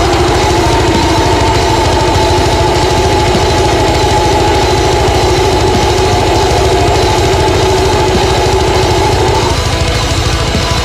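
Deathcore music: fast, even double-kick drumming beneath a long held distorted chord, which drops out shortly before the end.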